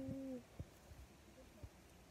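A short, steady hummed "mm" in a woman's voice, about half a second long and dropping slightly at the end, followed by a few faint ticks of leaves being handled.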